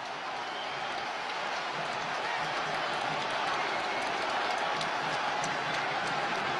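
Football stadium crowd noise: a steady wash of cheering and applause from the stands after a goal, swelling slightly in the first couple of seconds and then holding level.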